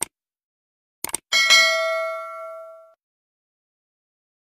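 Subscribe-button sound effect: a click, a quick double click about a second in, then a notification bell ding that rings and fades over about a second and a half.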